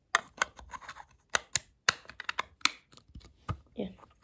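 Cardboard model box and its packaging being handled and opened: an irregular run of sharp clicks and taps, about a dozen in a few seconds.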